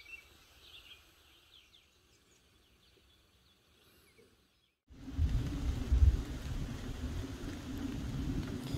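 Faint, sparse bird chirps over very quiet outdoor air. About five seconds in, the sound cuts abruptly to a louder low rumble with a steady low drone over it.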